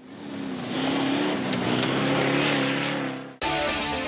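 Toyota Land Cruiser rally car driving over desert sand: its engine drones steadily under a loud rush of tyre and sand noise. The sound fades in at the start and cuts off abruptly near the end, giving way to guitar music.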